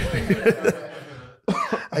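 A man laughing in a few short, choppy bursts that trail off into a breathy exhale, with a cough-like edge, then a brief laugh again near the end.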